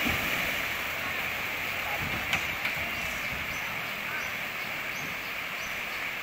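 Steady rushing of a flooded river running fast through the broken posts of a washed-out wooden bridge, with a short sharp click a little over two seconds in and a few faint high chirps later on.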